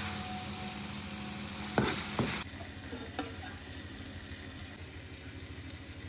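Steel spoon stirring a thick masala paste frying in a pan, with a light sizzle. Two sharp clinks of the spoon against the pan about two seconds in, after which the sound drops quieter.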